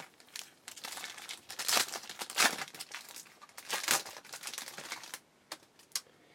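Foil trading-card pack wrapper crinkling as it is torn open and worked off the cards by hand, in uneven spurts for about five seconds, then a couple of faint clicks near the end.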